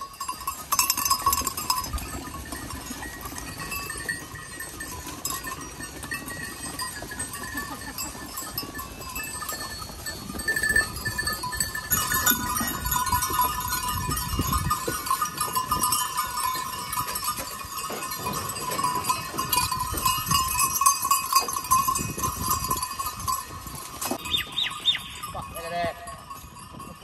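Bells on a herd of goats clanking and jingling together without a break as the animals crowd along a dirt trail. The ringing grows denser and louder about halfway through.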